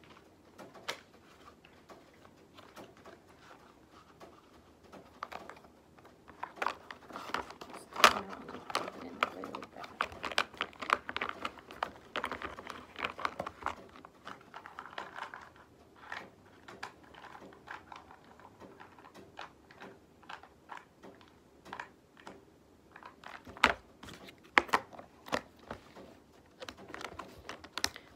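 School supplies and plastic packaging being handled and packed by hand: irregular crinkling, rustling and small clicks and knocks, with a sharper knock about eight seconds in and another a few seconds before the end.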